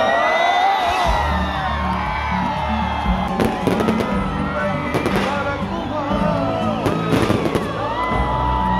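Loud live concert music through a stadium sound system, with crowd noise and several sharp bangs from stage effects as confetti is shot over the audience, clustered in the middle and later part.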